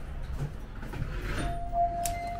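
Store entrance door alarm sounding one steady electronic tone. The tone starts about one and a half seconds in and is still going at the end.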